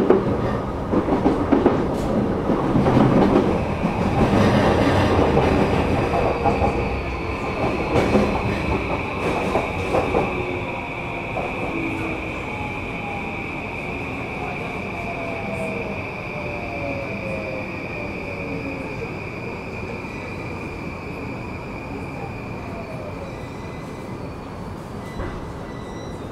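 Onboard running sound of a JR East E235 series motor car slowing for a station. Wheels and rails rumble and clatter, a steady high squeal holds throughout, and the traction inverter's whine falls in pitch from about halfway through as the train brakes and the noise dies down.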